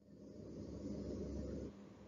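A brief click, then about a second and a half of faint low rumbling noise that fades out.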